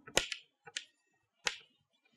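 Chalk tapping on a chalkboard while a word is written: a few short, sharp clicks, one just after the start, two more under a second in, and another about a second and a half in.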